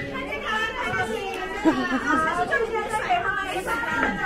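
Indistinct chatter of many overlapping voices, children's voices among them.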